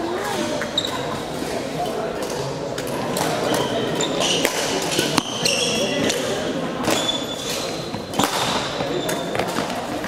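Badminton rally on an indoor court: sharp racket strikes on the shuttlecock about a second apart, with short high squeaks of shoes on the sports floor, echoing in a large hall.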